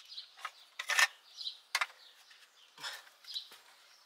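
Faint, scattered bird chirps, with a few short clicks and brief rustling bursts in between. The handheld vacuum is not running.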